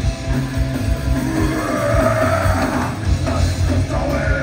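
A punk rock band playing live, with electric guitars, bass and drum kit at full volume, heard from the audience.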